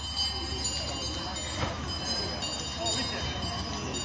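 A tractor's engine running steadily behind an ox-drawn cart rolling over stone paving, with a faint high squeal over the low rumble and people talking nearby.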